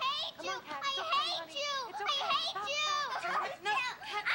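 A young child's high voice babbling without clear words, in short runs that rise and fall in pitch.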